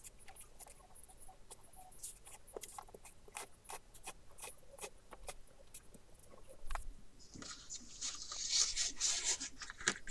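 Fingers pressing and rubbing along a fold in card to make a strong crease: scattered small crackles and taps, then from about seven seconds in a steady papery rubbing.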